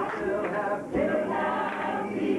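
Mixed choir of men and women singing a cappella gospel, unaccompanied voices only. The sound dips briefly just before a second in, then a new phrase begins.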